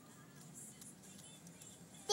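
Near silence: faint background music over quiet room tone.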